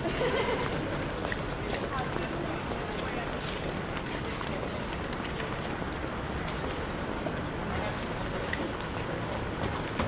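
City street ambience recorded while walking on a pavement: a steady wash of distant traffic and low wind rumble, with scattered footsteps and faint voices of passers-by.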